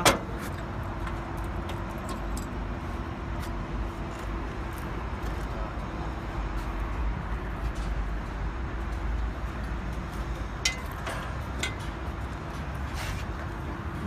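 A steady low engine hum running evenly, with a sharp click at the very start as a panel latch is worked and a few lighter clicks near the end.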